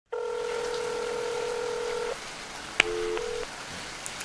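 Telephone line tones on a call: a steady electronic tone for about two seconds that cuts off suddenly, then a click and a short two-note tone before a call is answered by an answering machine.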